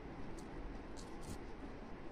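Faint handling noise of crochet work: a few soft ticks and rustles from the yarn and metal hook over steady low room noise.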